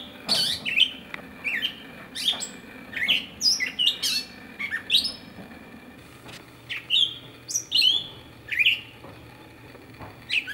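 Songbirds chirping in a tree canopy: short, high calls, many sliding down in pitch, coming in quick irregular runs with a short lull just past the middle.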